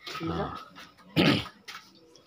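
A man's single loud cough a little over a second in, after a short spoken 'ah, oh'.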